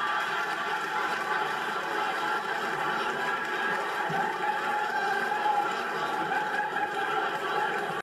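Studio audience laughing, steady and unbroken throughout.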